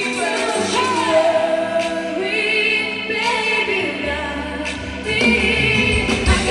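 Female singers performing a pop song live on stage, wavering vocal lines over amplified backing music, with a low bass note coming in about four seconds in.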